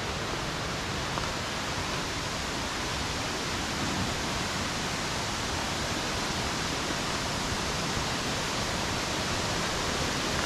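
A waterfall: a steady, even rush of falling water.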